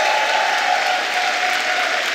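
Audience applauding, with one long held call rising above the clapping that fades near the end.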